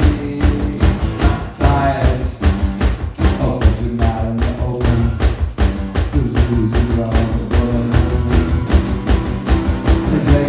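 Live music: an acoustic guitar strummed hard and fast in a driving, even rhythm, with a man singing over it in stretches.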